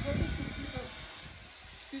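A brief, indistinct bit of speech with low rumbling from wind on the microphone in the first half second, then faint steady hiss.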